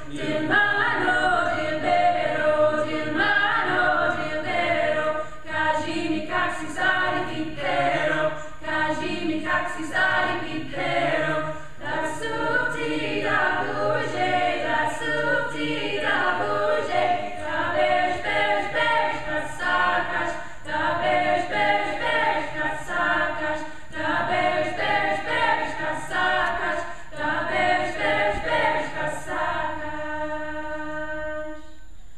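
Mixed a cappella ensemble of women's and men's voices singing a Bulgarian folk song in short, rhythmic phrases.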